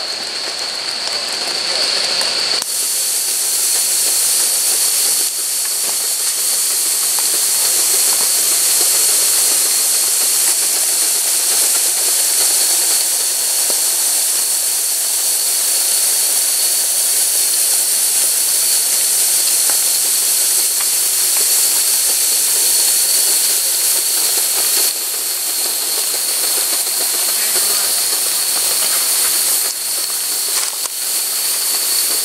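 Steam hissing steadily from a live-steam model steam locomotive running on its track, growing louder about two and a half seconds in, with a thin, steady high tone running through it.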